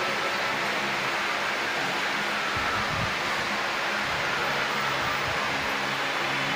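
Steady background noise with a faint low hum running under it, and no distinct single event.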